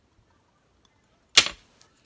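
A flipped metal yes/no coin landing on a cloth-covered table: one sharp clack about one and a half seconds in, ringing briefly, then a faint tick as it settles.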